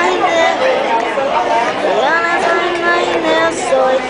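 A boy's voice in a drawn-out sing-song, gliding in pitch and holding some notes for most of a second, over the chatter of other diners.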